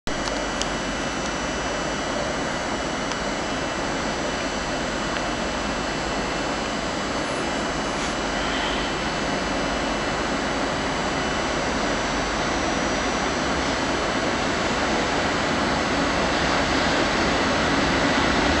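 Freight train approaching along the station tracks: a steady rushing rumble that grows gradually louder.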